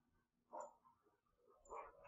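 Near silence: room tone, broken by two faint, short sounds about a second apart.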